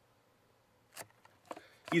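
One short click of the cardboard snack box being handled, about a second in, followed by a couple of fainter knocks.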